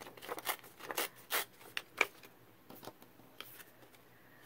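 Printed paper being torn and handled by hand: a run of short, irregular rips and crinkles over roughly the first two seconds, then a few faint rustles.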